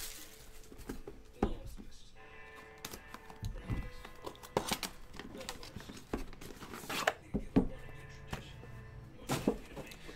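Cardboard packaging of a hockey card box being handled and pulled off a metal tin: rustling, sliding and several sharp knocks and taps, with faint music in the background.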